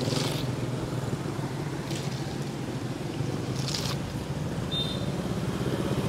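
Low steady hum of a motor vehicle engine, with a few brief rustles as pineapples and their leafy crowns are handled. A short high tone sounds about five seconds in.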